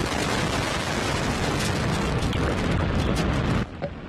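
Antares 230 rocket's first stage, two RD-181 kerosene-oxygen engines, at liftoff: a loud, crackling roar that cuts off suddenly about three and a half seconds in.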